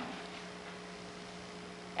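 Faint steady low hum with a light hiss underneath, with no distinct events.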